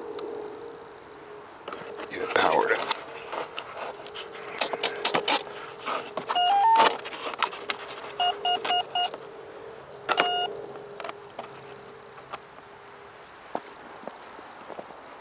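Electronic speed controller for a 70 mm electric ducted fan sounding its startup tones as the flight battery is plugged in: a quick rising three-note chime, then four short beeps, then one longer beep, signalling that the controller has armed. The plug and wiring click and rattle just before.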